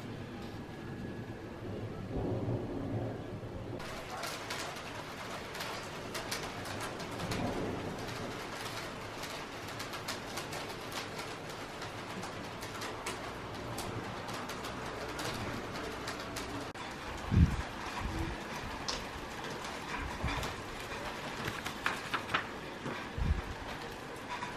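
Rain falling with a steady hiss and patter that swells in about four seconds in, with a few low rumbling thumps of thunder later on.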